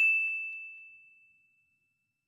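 Bell-ding sound effect of a "click the bell" subscribe animation: one high, clear ring struck just before, fading out steadily over about a second and a half, with a faint tick a moment after it begins to fade.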